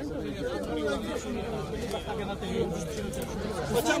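Several men talking over one another in a crowd: overlapping, unclear chatter.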